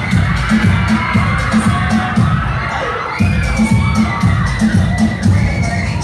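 Dance music with a heavy, pulsing bass beat plays for a children's dance routine while the crowd cheers and children shout over it. The beat drops out for a moment a little before three seconds in, then comes back.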